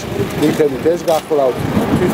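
A man speaking Georgian in a close interview voice, with steady low background noise under the speech.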